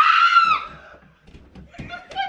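A woman gives one startled, high-pitched scream, rising sharply and lasting under a second, as a live guinea pig is put into her hands.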